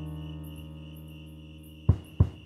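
A held digital-piano chord slowly dying away, with crickets chirping steadily in the background. A sharp click sounds near the end.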